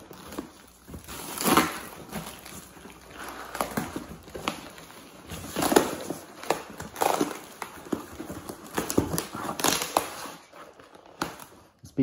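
Cardboard packaging being handled and pulled apart by hand: irregular rustling and scraping of cardboard with scattered knocks of the box.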